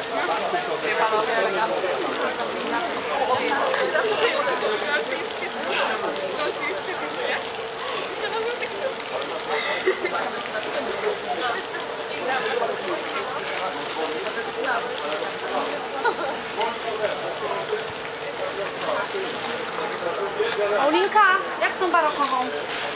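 Indistinct conversation of several people close by, with a short laugh about seven seconds in, over a steady hum.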